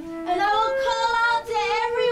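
A high voice singing a melody with a wavering vibrato. It comes in about a third of a second in, after a steady held note.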